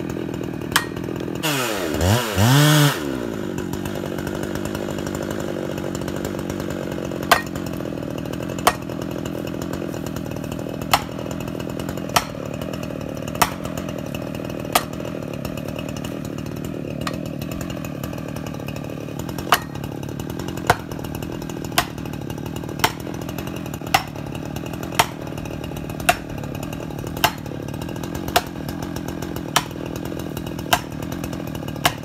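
Chainsaw engine idling steadily, revved up and back down once about two seconds in. Sharp knocks come roughly once a second over the idle, from a tool being swung against the tree trunk.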